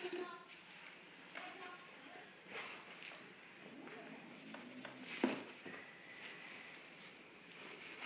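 Soft rustling and handling noises as a young lamb is lifted into a wooden box and set down on straw, with one sharp knock on the wood about five seconds in.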